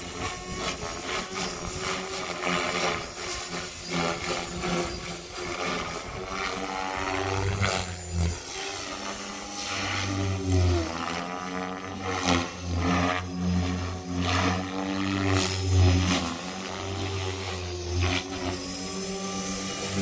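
Blade Fusion 550 electric RC helicopter in flight: the main rotor and motor whine, its pitch rising and falling as the helicopter manoeuvres, and growing stronger about a third of the way in.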